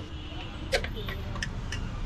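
A metal spoon clinks several times against steel serving pots as jhal muri ingredients are scooped, the loudest clink about three-quarters of a second in. Under it runs a steady low rumble of road traffic.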